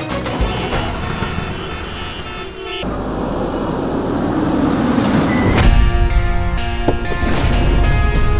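Background music, then from about three seconds in a vehicle's approach swells up as the music drops away. It ends in a sudden hit at about five and a half seconds, and heavy music comes back in.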